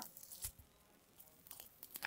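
Near silence, broken by a faint click about half a second in and a few fainter clicks near the end. These are soft eating sounds of someone biting into an avocado.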